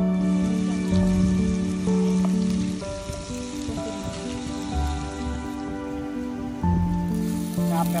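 Background music with steady held notes, over oil sizzling as fish steaks fry in a pan.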